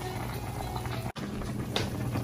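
Pork in water at a full boil in a saucepan on the stove, bubbling steadily. The sound cuts out for an instant a little past a second in.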